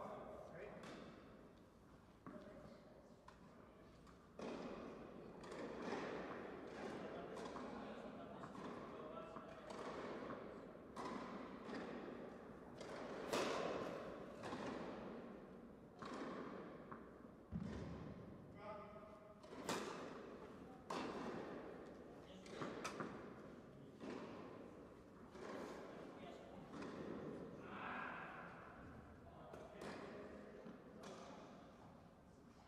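Tennis rally on an indoor court: sharp knocks of the ball off rackets and the court, about one a second, each followed by the echo of the hall.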